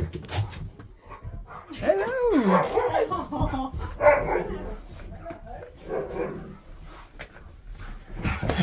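A husky and a malamute vocalizing as they greet each other, giving a few howl-like 'talking' calls that slide up and down in pitch, with short barks mixed in.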